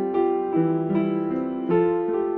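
Upright piano played solo: a slow, gentle passage of sustained mid-range chords, with a new note or chord struck about every half second.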